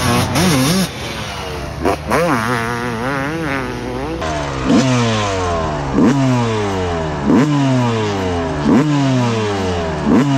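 1996 Honda CR250's single-cylinder two-stroke engine being ridden hard on a dirt track, its revs rising and falling with the throttle. From about four seconds in it is heard up close from the rider's camera, the pitch sliding down and then jumping back up about every second and a half.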